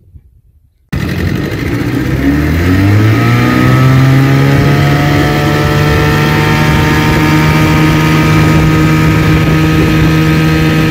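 Evinrude 4.5 hp two-stroke outboard motor coming in suddenly about a second in, rising in pitch as it speeds up over the next two seconds or so, then running steadily under way.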